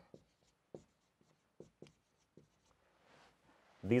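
Felt-tip marker writing on a whiteboard: a few faint, short strokes and taps as a couple of words are written.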